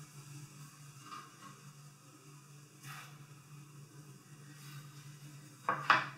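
Faint sounds of fresh fettuccine being stirred in a pot of boiling water, with a few soft swishes over a steady low hum.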